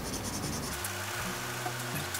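Faint scratching of a Pentel mechanical pencil's graphite lead on paper as it lays down shading strokes, over a steady background hiss.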